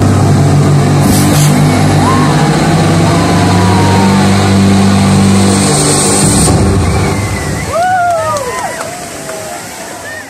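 Outdoor water-and-fire feature running loud: water cascading with a deep steady drone underneath, and a hissing burst from its gas flame jets about five to six seconds in. Near the end, voices in the crowd exclaim in rising and falling calls as the sound eases.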